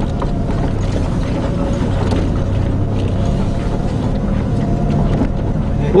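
A four-wheel drive's engine running at a steady pitch, heard from inside the cab, with a few knocks and rattles as it crawls over a rough dirt track.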